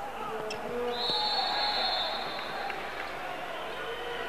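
Hall crowd chatter during a handball match, with a referee's whistle blown once: a steady high tone starting about a second in and lasting under two seconds.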